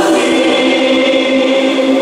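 Choir singing a hymn with long held notes, the voices moving together to a new note right at the start.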